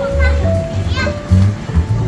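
Background music with a repeating bass line and held melody notes, with children's voices calling out over it.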